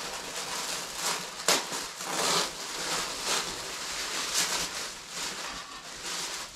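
Paper wrapping rustling and crinkling as a package is unwrapped by hand, with a few sharper crackles, the loudest about a second and a half in.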